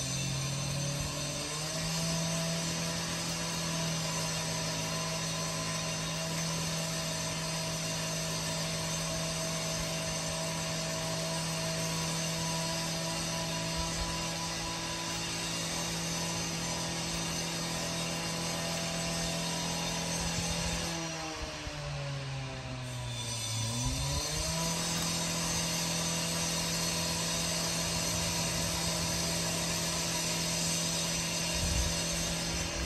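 A small engine running at a steady speed. About 21 seconds in, its pitch drops off for a couple of seconds, then it revs back up and holds steady again.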